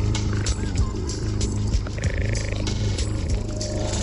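Electronic music retuned to a solfeggio frequency, with a heavy steady bass and regular percussion hits, and a brief high synth tone about halfway through.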